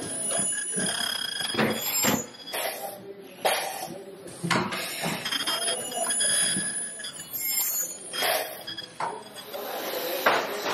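Factory-floor clatter from mask-making machinery: repeated sharp clicks and knocks, with short high beeping tones that come and go. Indistinct voices sound in the background.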